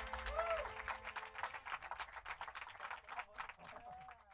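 Small audience clapping and applauding at the end of a live song, the applause thinning out and fading away.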